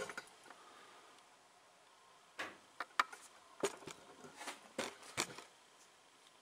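A string of light clicks and small knocks, about ten of them irregularly spaced, starting a little over two seconds in after a quiet stretch. They are the sound of a camera being handled and repositioned on its mount.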